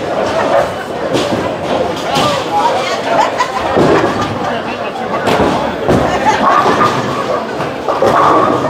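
Bowling alley din: background voices with several sharp thuds and crashes of bowling balls and pins on the lanes.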